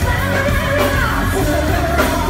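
Live rock band playing loud: drums and bass under a wavering lead melody line.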